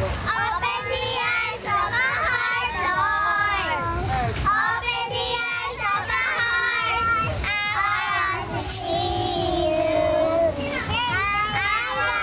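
A group of young girls singing an action song together, with a long held note about nine seconds in.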